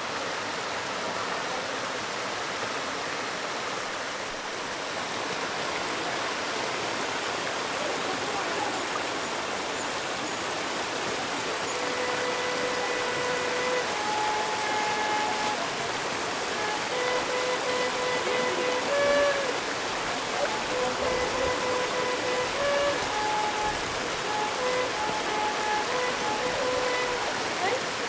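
Rushing water of a rocky mountain creek, a steady hiss throughout. From about halfway through, a simple tune of held notes that step up and down in pitch plays over it.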